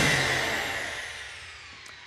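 The last chord of a TV programme's rock-guitar intro theme dying away over about two seconds, with a faint sweep falling in pitch as it fades.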